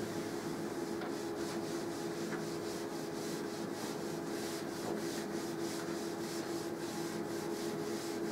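Cloth wiping a chalk-covered blackboard, erasing it in quick, even back-and-forth strokes, over a steady low hum.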